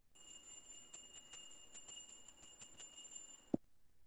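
Faint steady high-pitched electronic whine with scattered clicks, cut off by a sharp click near the end.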